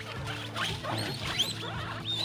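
Guinea pigs squeaking: several short, high-pitched squeaks in quick succession, each rising in pitch, bunched in the middle of the clip.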